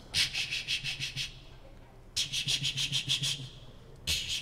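Sound effect of a truck engine cranking over without starting, in two attempts of rapid rhythmic chugs, about seven a second, with a short pause between them: the truck is out of gas.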